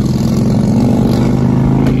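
A car running, heard from inside the cabin as a steady engine hum with road rumble. A single click comes near the end.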